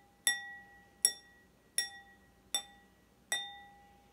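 A pencil taps five empty, identical stemless wine glasses in turn, about one tap every three-quarters of a second. Each glass rings with the same clear pitch; the glasses all sound the same because none holds any water yet.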